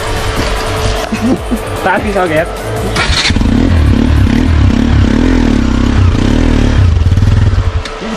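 Motorcycle engine revving hard in rising and falling waves from about three seconds in, then dropping away just before the end, while the bike is worked up a muddy bank under load.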